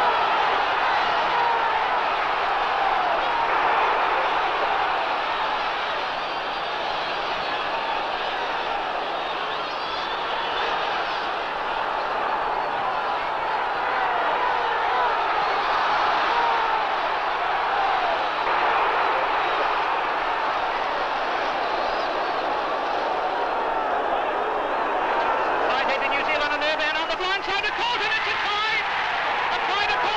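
Large stadium crowd at a rugby test match cheering and shouting, a continuous roar of many voices, heard through an old radio-broadcast recording. Near the end, a burst of rapid ticking sounds joins in.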